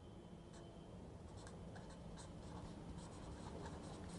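Pen writing on paper: a faint run of short scratching strokes as a line of working is written out.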